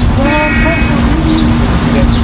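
A car horn sounds once, briefly, from about a quarter second to about a second in, over steady street and traffic noise and the voices of a crowd.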